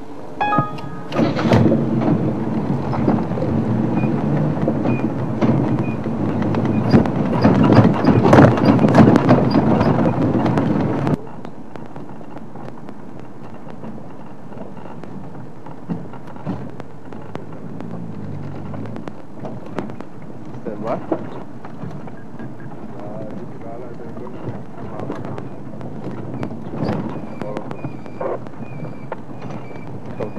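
Open safari vehicle driving along a bush track: rough rumbling engine and wind noise on the microphone, which cuts off abruptly about eleven seconds in. After that only a quiet background with scattered clicks and faint high tones.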